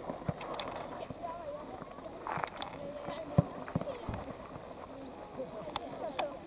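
Middle-school footballers calling out across the pitch, with scattered thuds of a football being kicked and played. The loudest kick comes a little past halfway.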